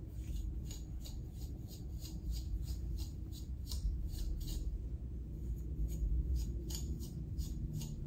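A wide-tooth comb raked again and again through a curly afro wig's hair to fluff it out: short scratchy strokes, about two to three a second, over a low steady hum.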